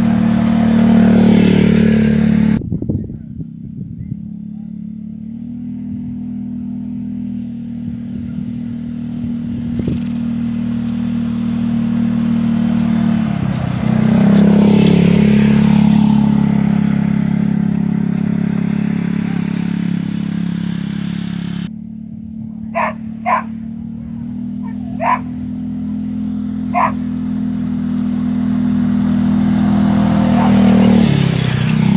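Polaris Ranger side-by-side utility vehicle's engine running steadily as it tows a roping dummy sled through sand, its pitch dipping and rising again about halfway through. A few short sharp sounds stand out near the end.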